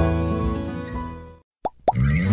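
Acoustic guitar background music fading out, then, after a brief silence, two quick plop sound effects with a short rising pitch, a fraction of a second apart, near the end.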